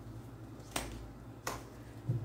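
Two short, sharp clicks of tarot cards being handled as a card is drawn from the deck, over a faint low hum.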